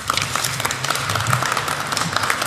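Audience of delegates applauding: many hands clapping in a steady patter.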